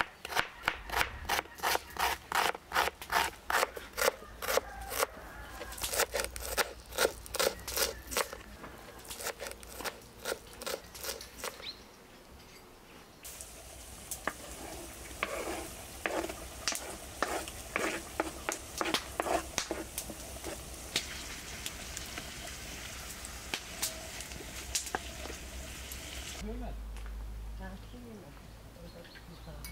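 Knife chopping onion on a wooden cutting board in quick, regular strokes, in three runs over the first twelve seconds. Then, from about thirteen seconds in, a steady sizzle of a wide pan of wild mushrooms frying over a wood fire, with scraping and knocks as the chopped onion goes in.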